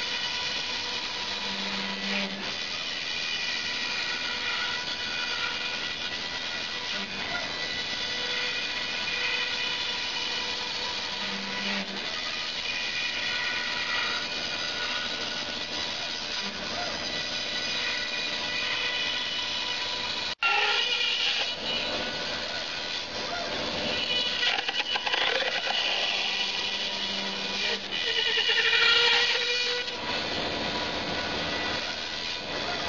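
A CNC foam router cutting foam: the spindle and axis motors give a steady whine of several tones over a rushing noise, with short low hums at intervals as the axes move. A whine rises in pitch near the end. The sound cuts out for an instant about two-thirds of the way through.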